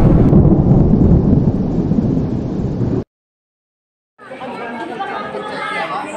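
A loud, deep rumbling sound effect that cuts off suddenly about three seconds in. After about a second of silence, people's voices and chatter come in.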